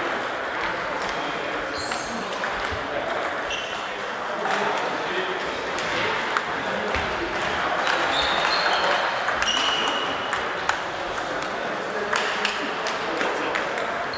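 Table tennis balls clicking off bats and tables in repeated rallies, with the short ringing ticks of balls bouncing on the table tops, coming from many tables at once in a large hall, over a murmur of players' voices.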